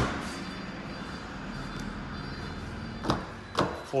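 A Toyota Yaris's tailgate shut with a sharp knock, then a steady background hum, then two clicks about three seconds in as the driver's door is unlatched and opened.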